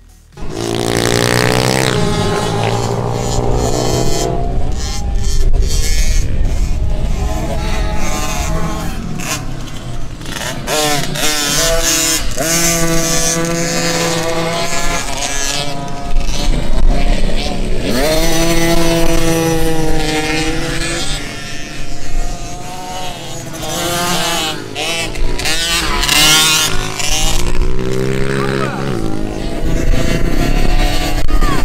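Several kids' small motocross bike engines revving up and down as the bikes ride past on a dirt track. The pitch rises and falls over and over, with a strong climb about eighteen seconds in.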